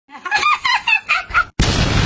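A rapid run of short, high-pitched squawk-like cries, broken off about one and a half seconds in by a sudden loud, noisy blast.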